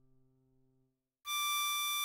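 A diatonic harmonica holds a single 8-hole draw note (D6) that starts about a second in after a near-silent pause. The note is steady and clear.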